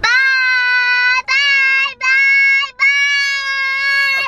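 A young girl's voice calling out in four long, drawn-out high notes at a steady pitch, with short breaks between them: a sing-song acting-out of her friends yelling bye-bye.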